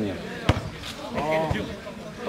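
A football being kicked on sand: a sharp thud about half a second in, then a softer, duller thud a second later.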